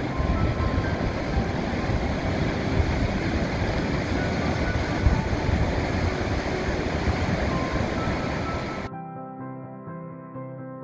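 Heavy surf breaking on the shore in strong wind, a dense, steady wash of noise with low rumble. About nine seconds in it cuts off suddenly and soft piano music takes over.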